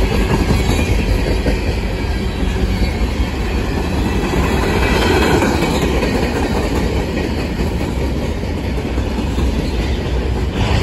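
Freight cars of a long manifest train rolling past close by: a steady, loud rumble of steel wheels on rail.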